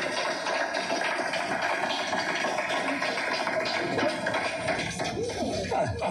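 Music: a dense, steady passage with a sustained note that fades about five seconds in.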